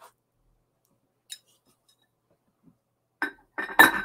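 Mostly near silence, then near the end a few sharp clinks with a short ring as a ceramic mug is lifted and handled.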